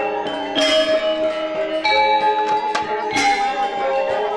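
Balinese gamelan playing Rejang dance music: bronze metallophones struck in ringing notes that sustain and overlap, with stronger accents about every second and a quarter.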